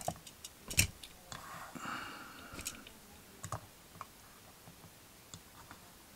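Light clicks and taps of small diecast model cars being picked up and set back down on a plastic display stand, with a brief soft sliding sound; the loudest knock comes just under a second in, and the taps thin out after about four seconds.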